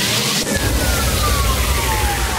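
Electronic dance music transition in a hardstyle track: about half a second in, a sharp hit gives way to a deep, sustained bass rumble under a noise wash, with a thin synth tone sweeping slowly downward in pitch.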